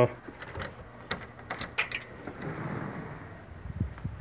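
A house door's deadbolt and doorknob latch being unlocked and turned: several sharp metallic clicks, then a soft swish as the door swings open, with a couple of light thumps near the end.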